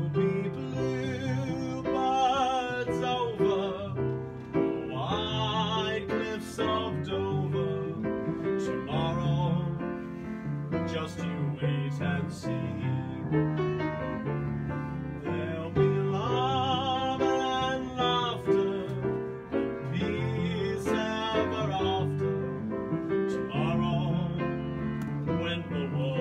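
Upright piano playing a slow old-time popular song in chords, with a singing voice wavering in vibrato over the melody at times.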